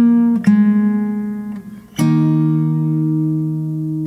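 Instrumental music on guitar: chords struck and left to ring, with a fresh chord at about two seconds that sustains to the end.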